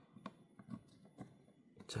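Faint scattered clicks and handling noises of a plastic balance-lead plug being pushed into the balance port board of a hobby battery charger.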